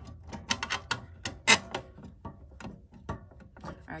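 Metal connecting rod of an industrial sewing-machine table's foot pedal clicking and tapping against the plastic pedal as it is worked into the pedal's hole: an irregular run of sharp clicks, the loudest about a second and a half in.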